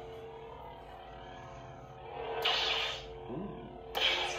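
Neopixel lightsaber's sound board humming steadily on its Ben Solo sound font, with a louder rushing swing sound about two and a half seconds in, lasting under a second, as the blade is moved.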